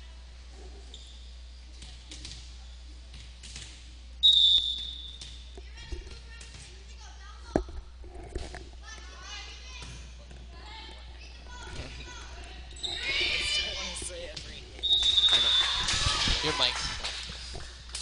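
Volleyball in a gym: a referee's whistle blows briefly about four seconds in to start the serve, and a sharp hit of the ball comes a few seconds later. The rally follows with ball thuds and rising shouts, then a second whistle ends the point and voices cheer.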